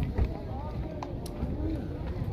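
Indistinct voices of people talking among the market stalls, over a steady low rumble and a few light clicks.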